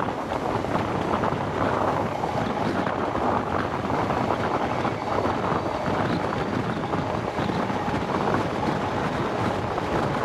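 Wind buffeting the microphone held out of the window of a High Speed Train running at speed, over the steady rushing running noise of the train. The level stays even throughout, with no single event standing out.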